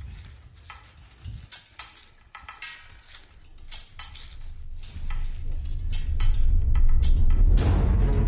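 Footsteps crunching through dry fallen leaves as several people walk a woodland trail, an uneven run of short crackles. About five seconds in a low rumble builds and grows louder, and music comes in near the end.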